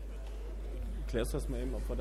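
Hall room tone with a steady low hum. About a second in, a man starts speaking into the microphone.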